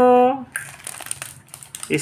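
Plastic candy packet crinkling as it is handled: a run of small crackles starting about half a second in, after a short spoken phrase.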